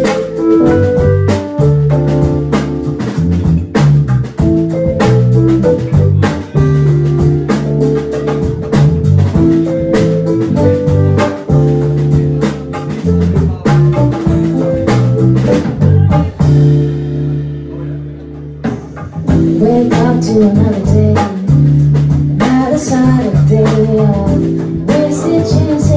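A live rock band playing: electric bass guitar, keyboard and drum kit. About seventeen seconds in the drums drop out and the sound thins for a couple of seconds, then the full band comes back in.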